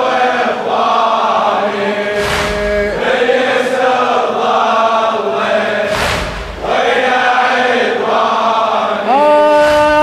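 A congregation of men chanting the refrain of a Shia latmiya lament in unison, with a collective chest-beat (latm) striking about every three and a half seconds in time with the chant. About nine seconds in, the solo male reciter's voice takes up the next line.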